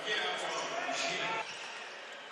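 Basketball game sound in an arena: crowd voices and ball bounces on the court. It drops to a quieter level about one and a half seconds in.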